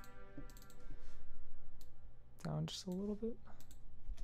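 Computer mouse and keyboard clicks, a few sharp separate ticks, with a brief pitched sound that bends upward a little past the middle.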